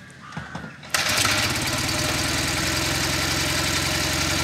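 Zündapp KS 750 sidecar motorcycle's air-cooled flat-twin engine being kick-started: it catches suddenly about a second in and settles into a steady idle.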